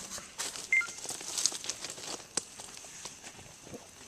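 Irregular rustling, clicks and light knocks of handling and movement, with one short high tone about three-quarters of a second in.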